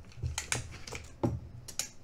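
Steel tape measure being handled and its blade pulled out along an aluminium bracket: a handful of sharp clicks and taps.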